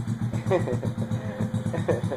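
A Top Trail RCL 49cc motorized bicycle's small single-cylinder engine idling steadily with an even, fast beat, just after starting once a plug with poor contact in its wiring was wiggled into place.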